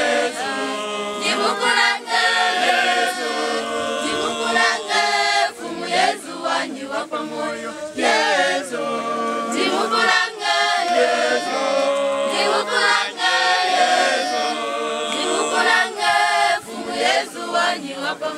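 A church choir of many voices singing without instruments.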